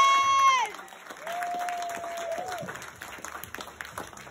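Audience applauding at the end of a comedy set, with two long whoops from the crowd; the applause drops off sharply under a second in and then thins out.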